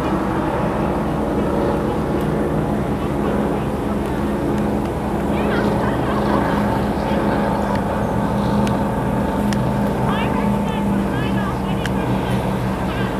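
High-performance powerboats running at speed across the water, a steady deep engine drone.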